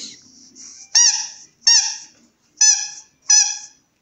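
A young golden retriever whining: four short, high-pitched whimpers, each rising and falling in pitch, beginning about a second in.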